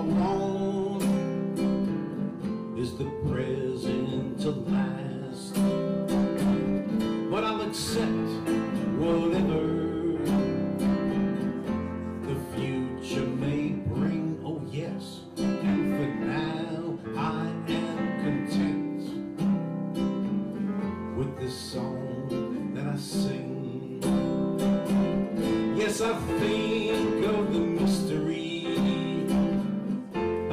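Live acoustic guitar strumming together with a Yamaha electric keyboard, an instrumental passage between verses of a simple song in C.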